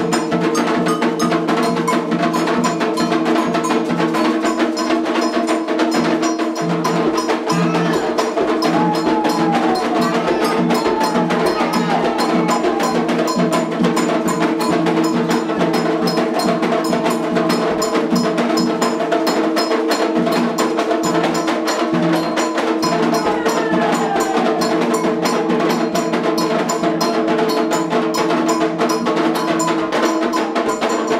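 Candomblé ritual percussion: atabaque hand drums and a ringing metal bell played in a fast, unbroken rhythm, with faint singing voices over it.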